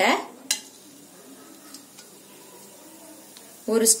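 Two pieces of cinnamon bark dropped into hot oil in a stainless-steel kadai: a sharp click about half a second in, then faint, steady sizzling with a few small ticks.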